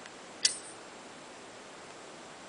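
A single sharp click from the handheld phone being handled, about half a second in, over a steady faint hiss.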